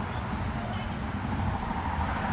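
Steady outdoor background noise: an even hiss with a low rumble underneath and no single clear event.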